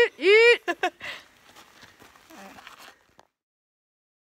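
Women laughing together: two high, loud laughs in the first half second, then quieter laughter and voices trailing off, before the sound cuts off about three seconds in.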